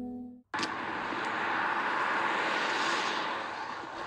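A held musical drone cuts off about half a second in. It is followed by a steady rushing noise: wind and handling noise on the microphone of a fast-moving handheld phone.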